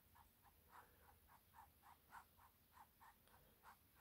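Very faint, quick swishes of a fluffy mop brush dusted lightly over tacky acrylic paint on canvas, about four soft strokes a second.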